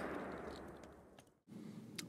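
The echo of a shotgun blast dying away across open ground, fading to near silence about a second in.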